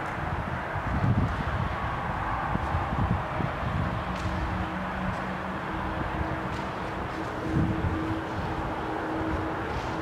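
Steady low rumble of the tunnel's background noise, with gusts of wind buffeting the microphone and a faint steady hum coming in about three and a half seconds in.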